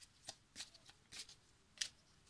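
A deck of oracle cards being shuffled by hand: a run of short, faint papery flicks, about six in two seconds, the sharpest near the end.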